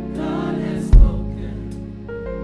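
Gospel choir singing with sustained chords. A loud, low thump hits about a second in.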